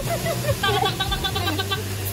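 A young woman talking excitedly, with another voice joining in, over a steady low hum.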